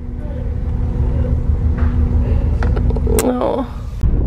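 Ferry's engines droning inside the passenger cabin: a deep rumble with a steady hum over it. A sharp click comes about three seconds in.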